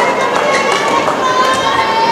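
Badminton shoes squeaking on the court mat during a rally, with a racket striking the shuttlecock, over steady arena crowd noise.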